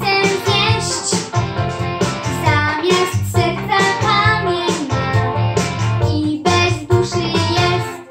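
A young boy singing a song in Polish over an instrumental backing track.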